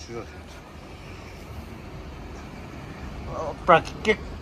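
Low, steady rumble of a vehicle engine running close by, with a brief spoken word near the end.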